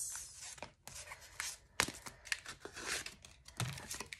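Paper banknotes and cash envelopes being handled: a string of rustles, crinkles and small sharp taps, loudest about two seconds in.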